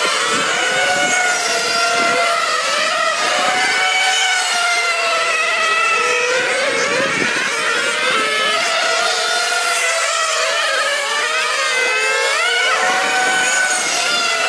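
High-pitched nitro glow engines of 1/8-scale on-road RC racing cars, their pitch rising and falling again and again as they accelerate out of corners and lift off into them.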